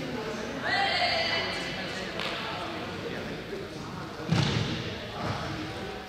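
Voices in a large sports hall, with a raised voice about a second in, then a single loud thud a little past four seconds in as a juggler loses a ball and steps down off his balance dome.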